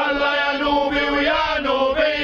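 Protesters chanting a slogan, voices drawn out in long held notes.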